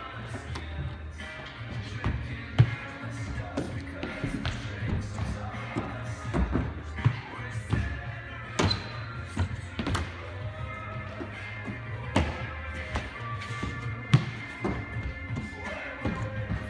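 Music with a steady bass line, over which come repeated thuds and taps of hands and feet striking wooden parkour boxes and rails as the athlete vaults and lands, with the sharpest impacts about two and a half seconds in and twice near the end.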